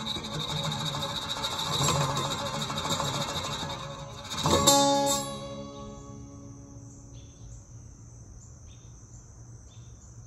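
Steel-string acoustic guitar strummed in a song's closing instrumental bars, ending with a final strummed chord about four and a half seconds in that rings out and fades. After it, a steady high-pitched insect drone is left.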